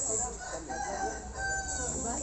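A rooster crowing, its long final note held for about half a second near the end.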